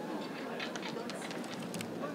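Background chatter of several distant voices, with a run of short sharp clicks or taps in the second half.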